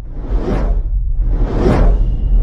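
Logo-animation sound effect: two whooshes, each swelling and fading, about a second apart, over a deep low rumble.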